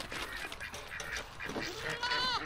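Faint, short calls of goats in a pen, over a low steady background.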